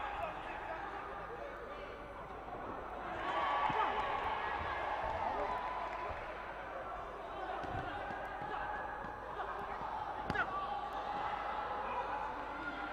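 Voices in a boxing hall, calling out and talking without clear words, with a few dull thuds of gloved punches landing and one sharper smack about ten seconds in.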